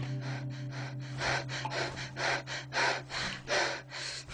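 A man breathing hard in quick, short gasps, several a second, over a low steady hum.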